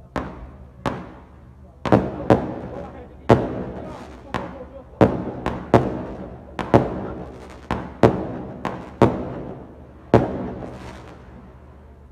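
Fireworks going off in a street: a run of about fifteen loud single bangs over ten seconds at uneven spacing, each echoing briefly before the next, ending about ten seconds in.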